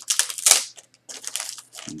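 Mail packaging crinkled and crunched by hand as it is opened: a quick run of crackles, loudest about half a second in.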